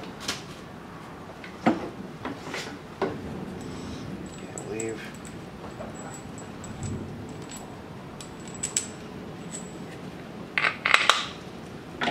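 Small steel hardware being handled: washers and a bolt clinking and clicking against each other and the metal gauge wheel as they are fitted together, in scattered light clicks with a burst of louder clinks near the end.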